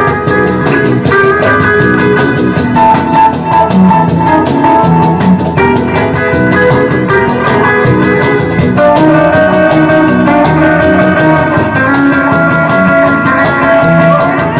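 Live band playing an instrumental break in an early rock-and-roll song: electric guitar lead over a steady drum beat.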